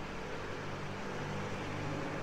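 A steady low hum with a faint even hiss underneath and no distinct events.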